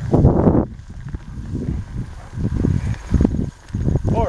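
Wind buffeting the microphone and steps swishing through tall grass, in irregular low bursts, the loudest in the first half second.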